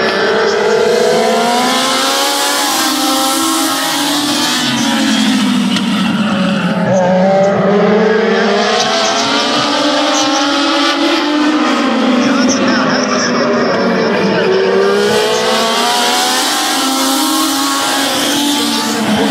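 A pack of Legends race cars running in close formation around a short oval, their small motorcycle-derived four-cylinder engines overlapping. The engine pitch falls and rises again and again as the cars lift through the turns and accelerate down the straights.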